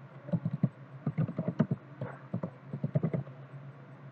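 Typing on a computer keyboard: several short runs of quick key clicks with brief pauses between them, over a steady low hum.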